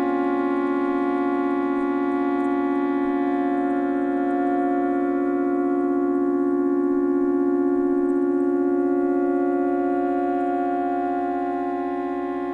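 Electronic synthesizer music: one sustained chord of many pitches held steady without change, easing slightly in level near the end.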